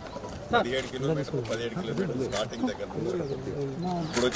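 Men talking in an open field, their voices overlapping and hard to make out.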